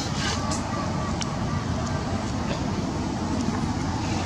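Steady low rumble of road traffic with a few faint clicks.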